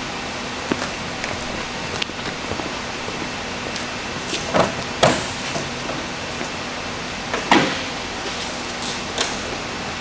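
Beech 18 cabin door being worked open: a few scattered clicks and knocks of the latch and door, the loudest two about halfway through and a third a couple of seconds later, over a steady hiss.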